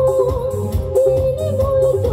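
Live band music: a woman sings long held notes into a microphone over drums and a steady low beat.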